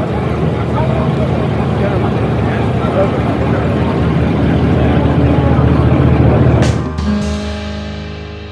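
A large 1970s American convertible's engine running as the car drives slowly past, with crowd chatter, getting louder until near the end. It then cuts to background music, which begins to fade.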